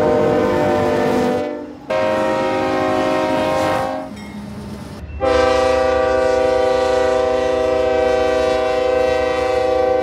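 Diesel freight locomotive air horns, a chord of several steady tones, sounding in blasts: one ends about a second and a half in, another runs from about two to four seconds, and a long blast starts about five seconds in and holds to the end. A low rumble of the moving locomotive and train sits under the horns.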